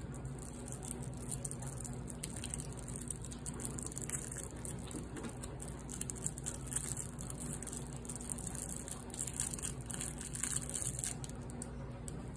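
Clear cellophane candy wrapper crinkling as small fingers twist and pull it off a hard yellow candy: a dense run of small crackles, thicker in stretches, over a steady low hum.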